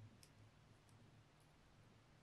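Faint clicks of M1 MacBook Air keyboard keys being pressed: about four light taps, the first the clearest, over a low steady hum.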